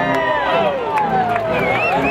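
Ballpark crowd with several voices shouting long, drawn-out calls over one another, and a high wavering call near the end.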